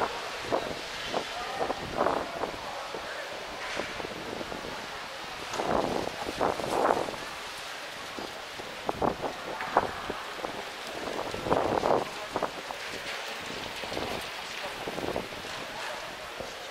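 Outdoor street ambience: a steady background hiss with brief snatches of indistinct voices every few seconds.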